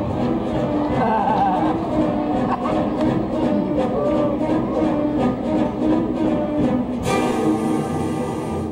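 Dramatic orchestral music led by strings, with short accents on a steady beat, and a loud rushing noise about seven seconds in that lasts around a second and a half.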